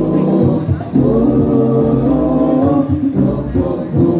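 Banjari hadroh group performing a devotional song: several male voices singing together over hand-beaten rebana frame drums. A new sung phrase with long held notes begins about a second in.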